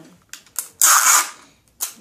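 Hands handling a small object: a few sharp clicks and a loud rasping noise lasting about half a second, about a second in.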